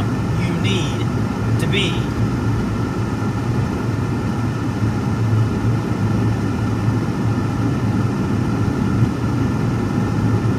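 Steady low road and engine noise heard inside the cabin of a moving car.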